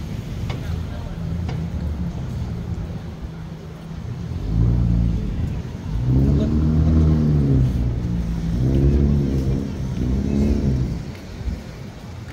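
A motor vehicle's engine running close by, low and steady at first, then rising and falling in pitch a couple of times as it accelerates away, over downtown street noise.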